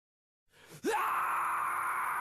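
Opening of a thrash metal track: silence for about half a second, then a short rising cry and a harsh, sustained scream.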